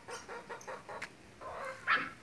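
Chickens clucking faintly and intermittently, with a short louder cry near the end.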